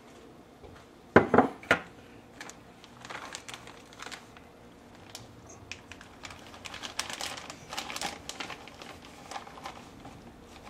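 Kitchen handling sounds: two sharp knocks of a glass measuring cup about a second in, then several seconds of light rustling and small clicks as a plastic bag of shredded cheese is handled.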